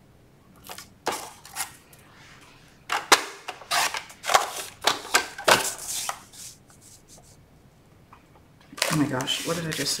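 Cardstock being handled and worked on a paper trimmer: bursts of paper rustling and sliding with sharp clicks, busiest in the middle, then a short lull.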